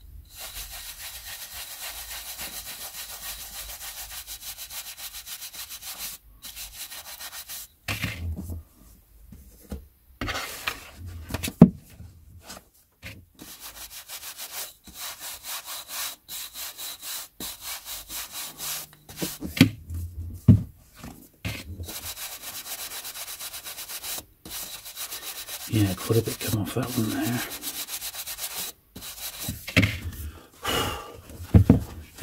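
A stiff-bristled wooden brush scrubbed back and forth over the page edges of a stack of old paperbacks, brushing off dust, in runs of quick, even strokes. The runs are broken by pauses and a few sharp knocks.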